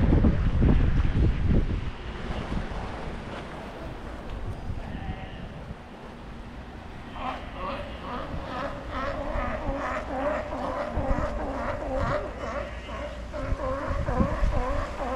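Wind buffeting the microphone for the first two seconds, then calmer seaside air. From about seven seconds in, a continuous run of short, pitched vocal calls rises and falls in quick succession.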